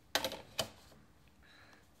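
Two sharp plastic clicks about half a second apart, as a clear plastic set square is moved and set down on a drawing board against a parallel rule and another set square.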